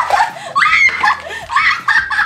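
A young woman laughing in several high-pitched bursts as ice cubes are poured down the back of her neck.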